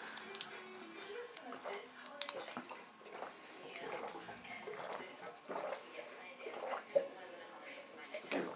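Faint murmured voices in a small room, with a few light clicks of a drinking glass being handled, the sharpest near the end.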